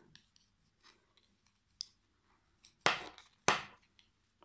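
Thick knitting needles clicking and scraping against each other as stitches are purled two together: faint scattered ticks, then two sharper clicks about half a second apart near the end.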